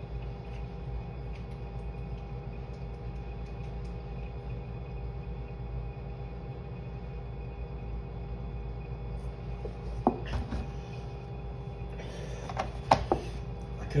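A man drinking water from a plastic gallon jug over a steady room hum. A sharp knock comes about ten seconds in, and a few more knocks follow near the end as the jug is handled.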